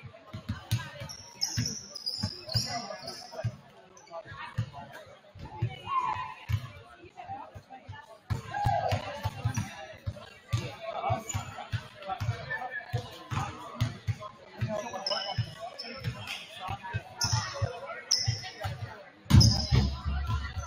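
Basketball dribbled again and again on a hardwood gym floor, a steady run of bounces, with short sneaker squeaks now and then and a loud thud near the end.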